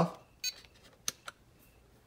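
Small clicks as the RC truck's power is switched off: a brief click about half a second in, then two sharp clicks close together about a second in.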